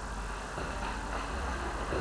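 Steady low hum with a faint hiss: background room noise picked up by the microphone during a pause in speech.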